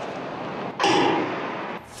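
Starting gun for a hurdles race fired about a second in: one sudden loud report that rings on briefly across the stadium, over a steady background hiss.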